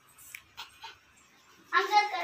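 Faint soft sounds, then a short, loud, high-pitched whimpering cry near the end.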